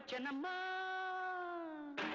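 Recorded song: a female voice sings a short phrase, then holds one long steady note for about a second and a half that slides down in pitch at its end.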